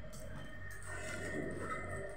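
Quiet room tone with a steady low hum and faint, indistinct background sounds.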